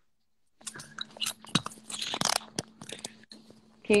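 Irregular rustling and clicks of a phone being handled and moved about, over a steady low hum. The sound drops out completely for about half a second at the start.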